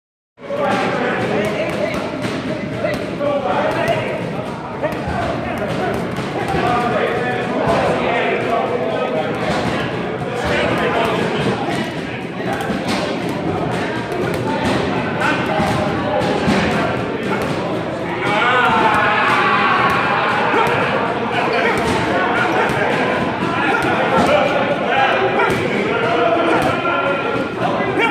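Gloved punches landing in quick, irregular succession on a hanging leather bag, each a sharp smack, over the voices of people in the gym.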